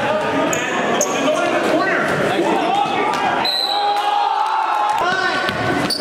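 Basketball dribbled on a hardwood gym floor with sneakers squeaking, over voices in the gym.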